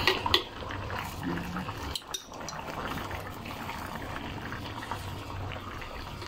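Thick tom yam sauce with fish head simmering in an aluminium wok, a steady low bubbling with small crackles. A metal spoon clicks against the wok a few times at the start.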